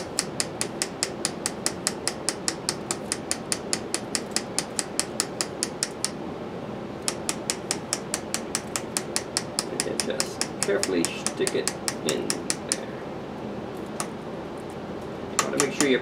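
Opened-up laminator running, its motor-driven rollers clicking steadily about four times a second. The clicking stops for about a second partway through, then runs on before stopping, with one last click a little later.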